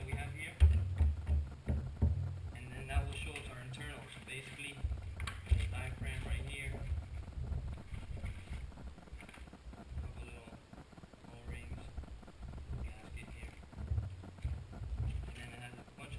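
Hands-on workshop noise from taking apart a plastic outboard VRO fuel pump with a screwdriver on a towel-covered table: irregular clicks and knocks over low thumps. The sharpest knocks come about half a second in and again about five and a half seconds in.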